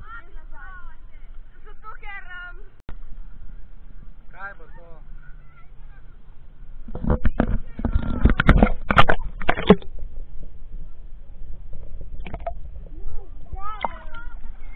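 Children's shouts and shrieks while they play in the sea, with a burst of loud splashing close to the microphone about seven to ten seconds in.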